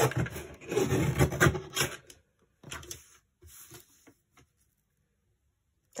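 Paper trimmer cutting card: the cutting head scrapes along its rail through the card in one loud stroke lasting about two seconds, followed by two fainter shorter strokes.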